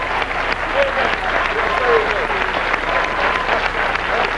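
Studio audience applauding, with a few voices calling out over the clapping.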